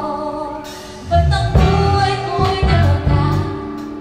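Live worship band playing a Tagalog worship song, a woman singing lead with backing singers over keyboard and electric guitars. About a second in the bass and drums come in and the music gets louder.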